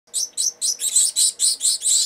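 Gouldian finch chicks begging to be fed, a rapid run of high-pitched calls about four or five a second that come closer together until they nearly run into one another.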